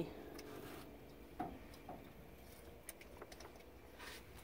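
Almost quiet: a faint low hum with a few soft, scattered clicks.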